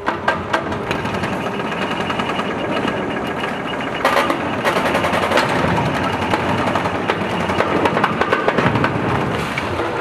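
Excavator's hydraulic concrete crusher jaws biting into a reinforced concrete slab: continuous crunching and crackling of breaking concrete with dense rapid snaps, over the working machine.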